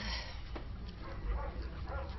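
A dog whimpering faintly.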